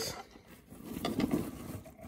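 Handling noise from steel feeding tongs and coconut-husk bedding in a plastic snake tub: light rustling with small clicks, picking up about half a second in.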